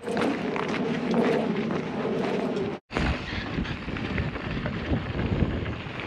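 A steady rumbling noise that cuts off abruptly nearly three seconds in. It is followed by wind buffeting the microphone and irregular low knocks and rattles as a mountain bike rolls over a dirt trail.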